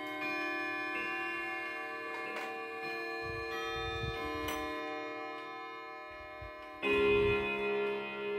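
Hermle triple-chime wall clock chiming on the hour: a melody of ringing chime notes that overlap as they die away, then a louder, lower hour strike near the end.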